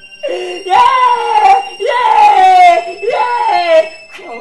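A voice wailing in three long, high cries, each about a second and falling in pitch.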